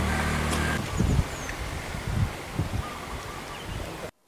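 Outdoor background sound under the cracked reservoir-bed footage: a steady low motor hum for about the first second, then irregular low rumbling and soft thumps over a faint outdoor hiss.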